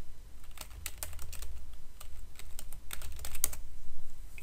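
Typing on a computer keyboard: a quick, irregular run of key clicks starting about half a second in and lasting about three seconds, over a low steady hum.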